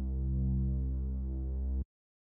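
Serum software synth playing a single held low bass note from a sawtooth bass patch through a low-pass filter. It stops abruptly near the end.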